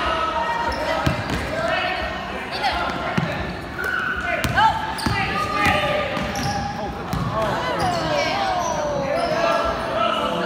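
Basketball bouncing on a hardwood gym floor during play, with scattered sharp thuds, under a steady mix of shouting voices from players and spectators.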